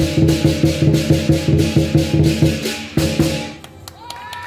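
Southern lion dance percussion: the big lion drum beaten in rapid strokes with cymbals and gong ringing along. The beating stops near the end.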